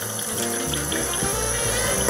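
Background music with a steady bass line over a kitchen tap running, its stream of water filling small cups in an enamel tray.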